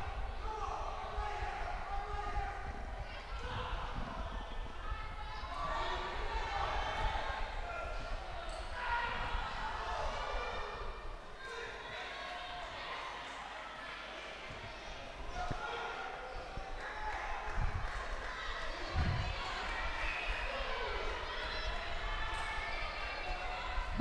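Spectators talking and calling out in an echoing gymnasium, a loose background of many voices. About two-thirds of the way through come a couple of dull thuds.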